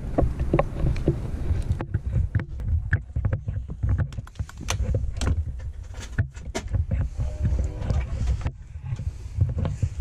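Low rumbling wind and handling noise on a body-worn action camera as the wearer walks, with scattered knocks and clicks as he steps into a camper trailer and moves around inside.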